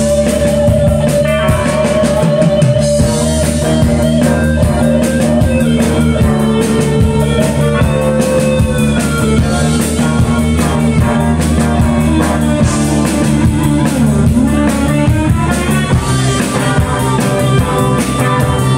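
Live rock band playing an instrumental: electric guitar holding long sustained lead notes over bass guitar and a steadily played drum kit.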